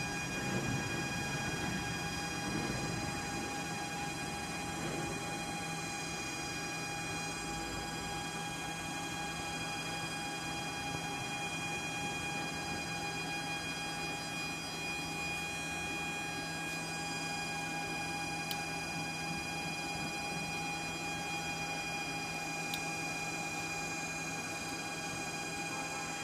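A switched-on 12-antenna cell phone jammer running with a steady electronic whine: several even, high, constant tones over a low hum, unchanging throughout.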